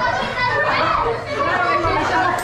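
Several voices, children's among them, talking and calling out over one another in a room.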